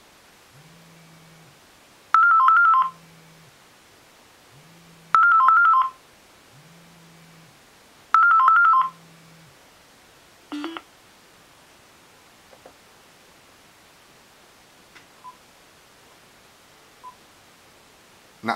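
iPhone ringing with an incoming call: three short bursts of a quick warbling two-tone ring about three seconds apart, with a low buzz of the vibrate alert between them. The ringing stops about nine seconds in, unanswered, and is followed by a few faint ticks.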